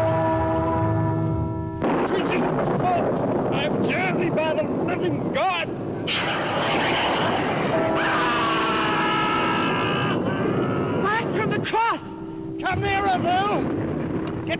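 Horror-film soundtrack: a held music chord breaks off about two seconds in to a dense din of shrieking and wailing cries over a rushing noise. Music chords sound again near the middle, and the rising and falling shrieks return near the end. The cries go with a hooded figure burning.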